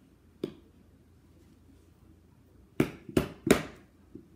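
Sharp plastic-and-cardboard clicks and taps from a tennis ball can being handled: one about half a second in, then three louder ones in quick succession near the end.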